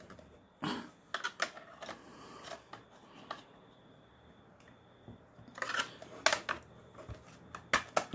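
Scattered plastic clicks and taps from a Ford Falcon BA/BF side-mirror housing being handled and pried at a clip tab with a screwdriver, with a cluster of sharper clicks about six seconds in.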